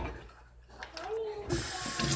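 Kitchen faucet turned on about a second and a half in: water starts running steadily into a stainless-steel sink and over a toy car held under the stream.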